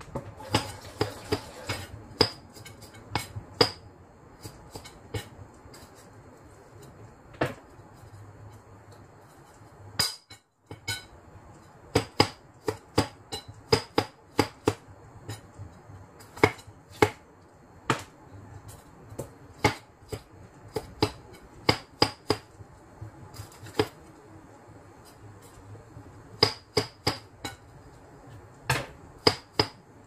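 Kitchen knife cutting plums on a plastic cutting board: irregular sharp knocks as the blade strikes the board, coming in quick clusters with short pauses between them.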